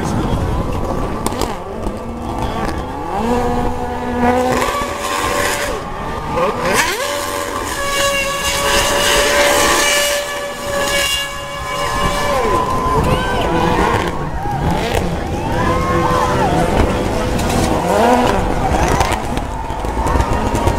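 Racing car engines revving up and down hard, with tyre squeal, as a Mercedes Formula One car spins donuts. The engine pitch rises and falls repeatedly and is highest in the middle.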